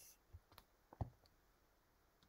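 Near silence with a few faint clicks; the loudest comes about a second in.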